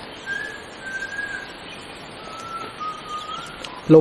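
A person whistling a few long, drawn-out single notes, the later ones held a little lower than the first.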